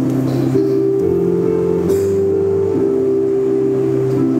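Electronic keyboard played through an amplifier, holding slow sustained chords that change about once a second as the introduction to a choral hymn.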